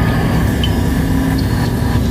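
A loud, steady, low rumbling electronic drone with a faint held tone above it, played from the band's on-stage DJ and synth rig.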